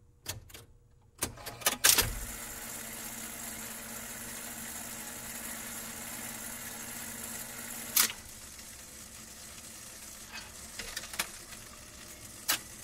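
A few sharp clicks and knocks, then a steady hiss with scattered crackles and one sharper click about eight seconds in. This is the surface noise of a vinyl record playing between songs.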